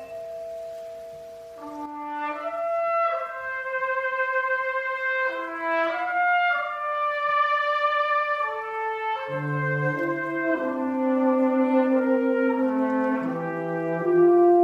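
Brass band playing a slow concert piece: sustained chords that move every second or two, swelling a couple of seconds in.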